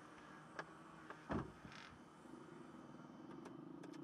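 Faint sounds inside a parked car's cabin: a light click, then a single dull thump about a second and a half in, followed by a low steady hum.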